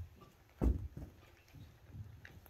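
Footsteps of a child in boots walking off a carpeted stage and down its steps: a few dull thumps, the loudest about two-thirds of a second in.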